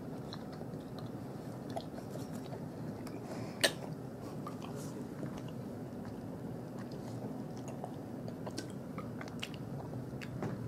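A person chewing a bite of caramel-filled milk chocolate candy, with quiet wet mouth sounds and small clicks, and one sharp click about three and a half seconds in.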